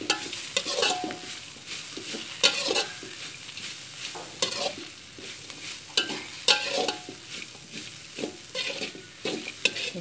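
Metal spatula scraping and knocking against a steel wok as bread pieces are stir-fried, over a light sizzle. The strokes come irregularly, a few of the knocks ringing briefly.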